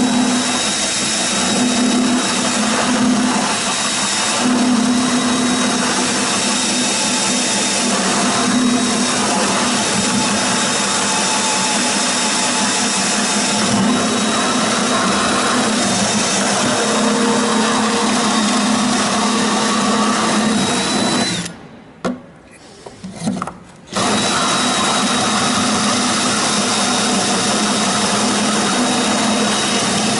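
Power drill with a hole saw cutting an access hole through a glider's composite fuselage skin, running steadily with a high whine. It stops for about two seconds near three-quarters of the way through, with a couple of short bursts, then cuts on.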